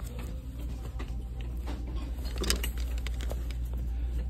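Clothes being handled on a store rack: a few light clicks of plastic hangers and fabric rustling as a pair of khakis is turned over, over a steady low hum.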